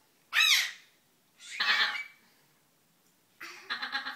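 High-pitched squeals from a person's voice: a short one that rises and falls in pitch about half a second in, a second just before two seconds, then lower voice sounds near the end.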